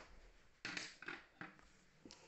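Lego bricks being handled: three faint short clicks and rustles, the first about half a second in.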